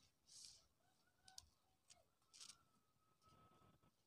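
Near silence, with a faint click about a second and a half in.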